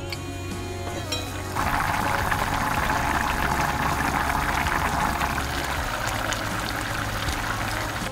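Dark soy braising liquid of Taiwanese braised pork bubbling at a simmer in an enamelled cast-iron pot, a dense crackling bubbling that starts about a second and a half in and fades just before the end.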